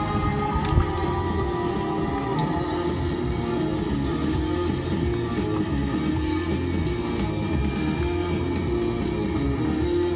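Live blues band music, with long held and sliding notes over a steady low bass line.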